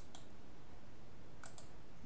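Computer mouse buttons clicking a few times, two quick clicks at the start and two more near the end, over a low steady background hiss.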